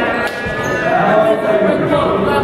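Voices calling and shouting in a school gymnasium during a basketball game, with a basketball bouncing on the hardwood court.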